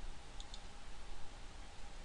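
Two quick, faint computer-mouse clicks about half a second in, over a low steady hiss of background room tone.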